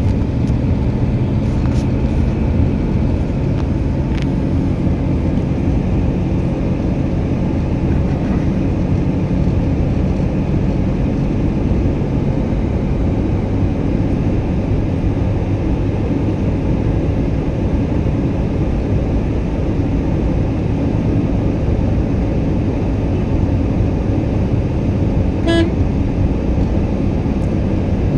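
Steady engine and road noise heard inside a moving car's cabin, with a brief horn toot near the end.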